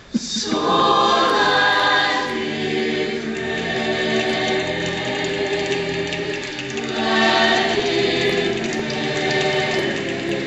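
A mixed-voice high-school a cappella ensemble singing full chords in close harmony. The voices come in suddenly and loudly right at the start after a brief dip, and swell again about seven seconds in.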